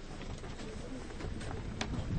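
A bird cooing faintly over outdoor background noise, with a short sharp click near the end.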